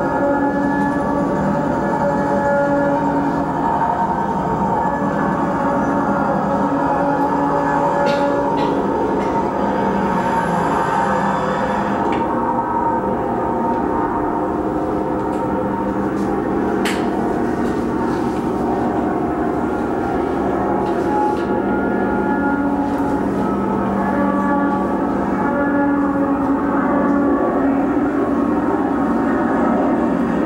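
Soundtrack of a screened video artwork played through room speakers: a continuous dense drone with held tones that shift in pitch every few seconds and a rumble beneath.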